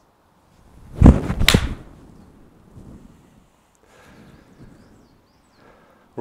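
TaylorMade P790 iron striking a golf ball off a hitting mat, a loud sharp strike about a second in, followed by a second sharp crack about half a second later.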